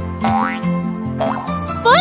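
Bright children's cartoon music with cartoon sound effects layered on it. Quick rising pitch glides come about a quarter second in and again past the middle, and a bigger upward sweep comes near the end as the football toy's parts move.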